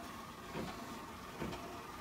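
Quiet room tone with faint soft handling sounds, a patch and jacket fabric being moved about, with a couple of small soft bumps.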